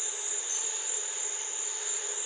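Steady open-field ambience: an even hiss with a constant thin high-pitched tone, like insects in a meadow.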